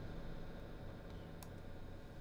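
Faint, steady low drone and hiss of the Galactic2 reverb plugin sustaining a wash of sound fed from a laptop microphone, with one soft click about one and a half seconds in.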